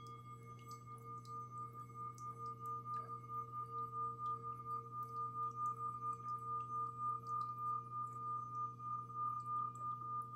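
Small handheld metal singing bowl rubbed around its rim with a wooden mallet, singing one steady high tone with a fainter lower tone beneath. The sound slowly swells and wavers in loudness as the mallet circles.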